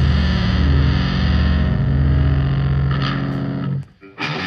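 Rock song with a heavily distorted electric guitar and bass holding a sustained chord. It cuts off abruptly just before the end.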